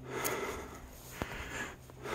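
A person breathing hard from the effort of climbing a steep trail, in swells of breath about a second and a half apart. There are two short sharp clicks about a second apart.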